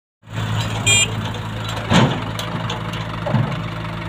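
Sonalika DI 60 RX tractor's diesel engine running steadily. A short high beep sounds about a second in, and a loud thud comes about two seconds in, with a smaller one near the end.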